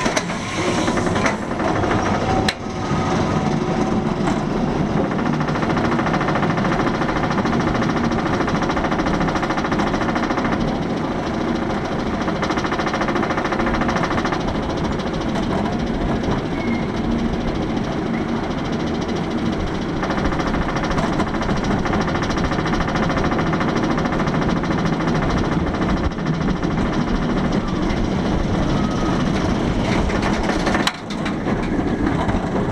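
Chain lift hauling a Bolliger & Mabillard inverted roller coaster train up its lift hill: a steady, loud mechanical rattle with a rapid clatter of ticks that runs without a break.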